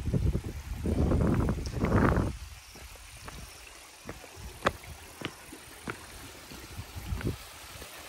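Low rumbling noise on a phone microphone in two swells over the first two seconds or so. Then it turns quiet, with a few sharp clicks of footsteps on bare rock.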